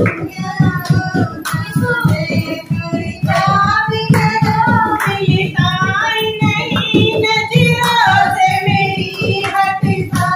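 Women singing a Hindi dehati folk song together, with rhythmic hand-clapping keeping a fast beat.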